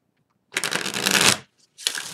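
A deck of tarot cards being shuffled by hand, in two bursts: the first about half a second in, lasting just under a second, the second starting near the end.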